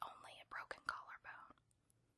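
Close-up whispered speech, a voice reading aloud that stops about a second and a half in, leaving a short near-silent pause.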